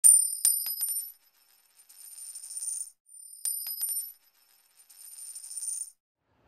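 Title-card sound effect: a bright, high-pitched metallic ding with a few quick clicks, fading and then swelling into a shimmer. The whole pattern plays twice, the second time about three and a half seconds in.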